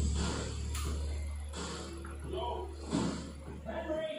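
Faint indistinct voices and music over a steady low hum, which cuts off abruptly at the end.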